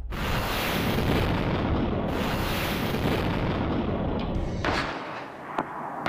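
Long-range multiple rocket launcher firing a five-rocket salvo after ignition: a sudden, loud, continuous rushing roar that swells in waves for about four seconds; all five rockets leave cleanly, none hung in the tubes. Near the end come two sharp blasts as rockets strike the target.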